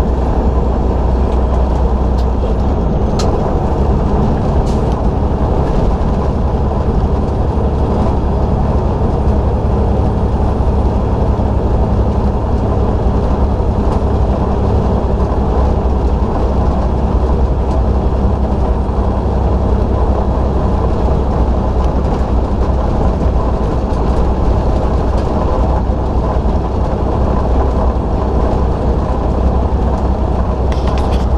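Heavy truck's diesel engine running steadily at highway cruising speed, a constant low drone mixed with tyre and wind noise.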